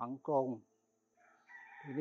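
A rooster crowing, starting about a second in with a rising call that is held as speech resumes.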